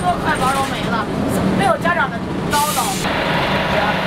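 City bus running, a steady rumble with voices talking over it, and a short sharp hiss about two and a half seconds in.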